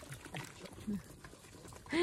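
Several street dogs eating from plates: faint eating noises with small clicks and a few brief, low sounds in the first second.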